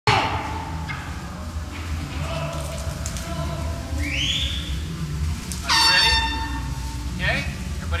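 A loud horn blast about six seconds in: one steady pitched tone, held for about half a second, that rings on faintly for a moment after. A faint short chirp that rises and falls comes a couple of seconds before it, over low steady workshop background and voices.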